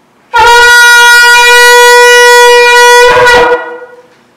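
A long twisted-horn shofar blown in one long, very loud blast: it starts about a third of a second in, holds a single steady note for about three seconds, then wavers and stops.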